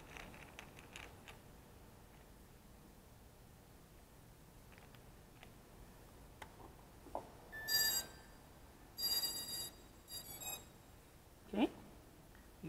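Battery connector clicking into place on a racing quadcopter, followed several seconds later by the electronic startup beeps of its ESCs sounding through the brushless motors: three short groups of pitched beeps, the motors' power-on and arming signal.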